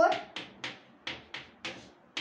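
Chalk on a blackboard writing numbers: a quick run of short sharp taps and strokes, about three a second, each fading fast.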